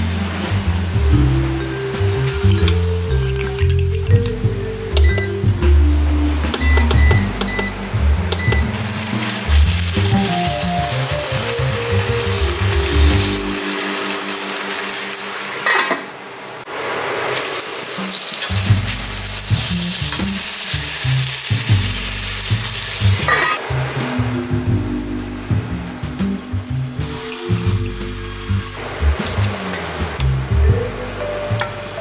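Background music over marinated pork sizzling as it fries in a pan. The sizzling is loudest through the middle of the stretch.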